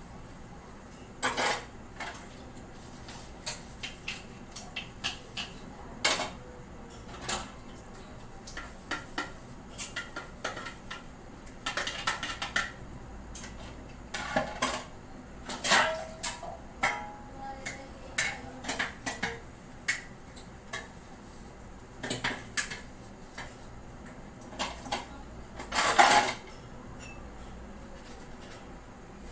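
Dishes and utensils clattering and clinking as they are washed and handled at a kitchen sink: irregular clanks, a few ringing briefly, the loudest near the end.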